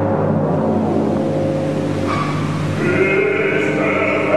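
Opera orchestra holding low, sustained notes. Past the middle, singing with a wide vibrato enters over it.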